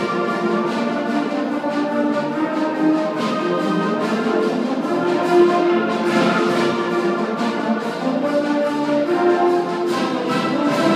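A high-school concert band playing, brass to the fore, with many sustained notes sounding together.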